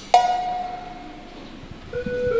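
A single bell-like instrument note struck once, ringing and fading away over nearly two seconds. Near the end the band's next notes come in as the song starts.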